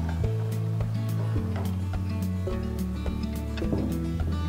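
Background music: sustained bass notes and chords with a light beat about twice a second.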